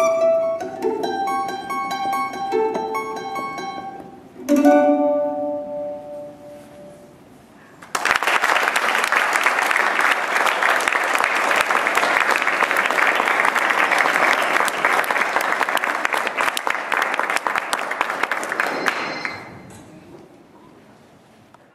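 Mandolin picking a run of notes that ends on a final chord about four and a half seconds in, left to ring and die away. A couple of seconds later audience applause starts and goes on for about eleven seconds, fading out near the end.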